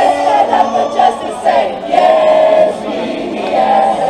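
A group of protesters singing together from lyric sheets, several voices holding long sustained notes.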